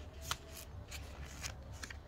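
Paper rustling and flicking as the pages of a small printed instruction booklet are leafed through and handled: a few short, crisp flicks, the sharpest about a third of a second in.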